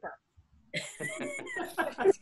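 Laughter from several audience members heard over a video call, breaking out just under a second in after a brief near-silence following the punchline.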